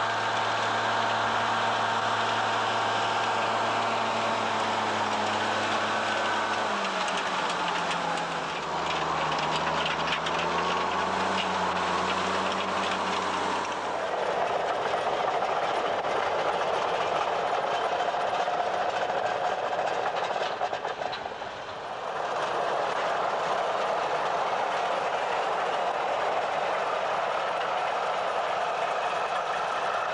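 Large diesel tractor engine running steadily. About seven seconds in its pitch drops and then climbs back. About fourteen seconds in the sound gives way to a rougher, noisier machine rumble, which dips briefly a little past twenty seconds.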